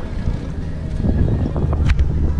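Wind buffeting the microphone aboard a boat, a steady low rumble, with one sharp knock near the end.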